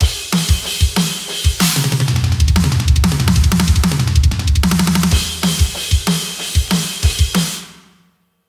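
Acoustic drum kit playing a fast metal fill: groups of four hand strokes around the rack and floor toms alternating with pairs of kick-drum hits (a four-over-two fraction fill), with snare hits and crash cymbals ringing through the middle. The cymbals die away near the end.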